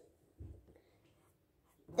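Faint paintbrush strokes on a painting surface, quiet apart from a single soft bump about half a second in.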